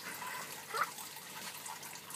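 Faint, steady trickle of water running into an aquaponics fish tank.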